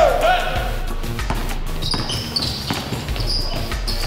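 Basketballs bouncing on a hardwood gym floor amid a practice drill, with several short high sneaker squeaks in the second half.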